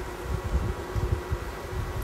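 Carrot fritters frying in shallow oil in a non-stick pan, sizzling with a steady hiss.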